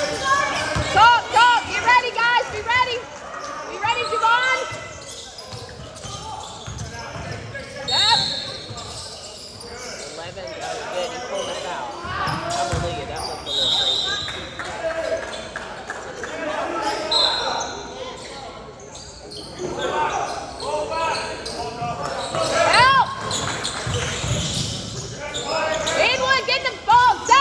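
Basketballs bouncing and sneakers squeaking on a hardwood gym floor, with the squeaks thickest near the start and again near the end. Three short whistle blasts come in the middle.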